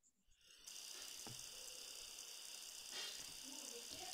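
Faint steady hiss of an open microphone, starting about half a second in after dead silence, with a few soft ticks and a brief faint scratch about three seconds in.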